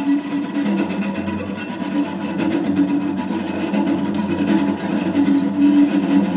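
Solo bowed low string instrument playing a fast, loud tremolo on a held double stop, with a scratchy, rasping edge to the bowing.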